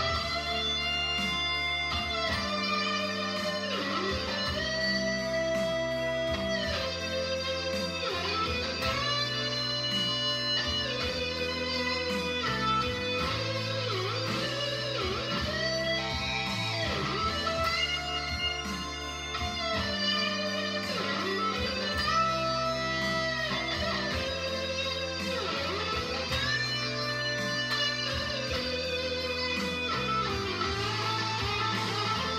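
2017 Gibson Les Paul Classic electric guitar, amplified, playing a lead solo of sustained notes with bends and vibrato over a backing track with a bass line.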